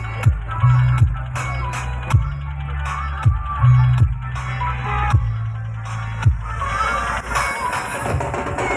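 Electronic DJ dance music played loud, with a heavy sustained bass line and sharp drum hits. The bass drops away about seven seconds in.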